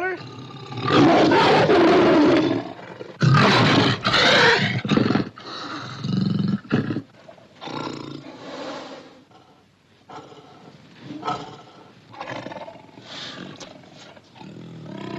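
Tiger roaring: two long, loud roars in the first five seconds, then several shorter, quieter ones.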